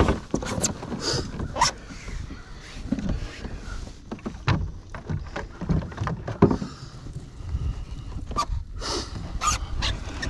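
Irregular knocks, thuds and rustling as a hooked fish is brought into a landing net and handled on a plastic kayak deck, the fish thrashing in the net.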